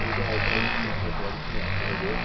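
Small radio-controlled model boat motor buzzing as the boat runs across the water, swelling and fading, over a steady hiss of rain.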